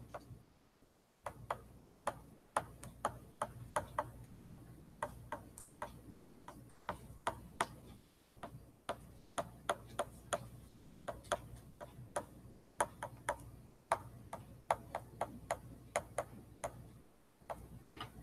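Irregular sharp clicks and taps of a stylus striking a writing surface as words are handwritten, several a second, over a faint low hum.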